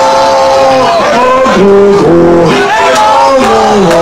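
Live band music from the stage, loud and close: a melody of long held notes, several pitches at once, each sliding into the next.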